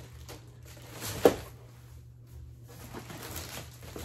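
Paper sheets and packaging being handled, with light rustling and one sharp knock about a second in, over a low steady hum.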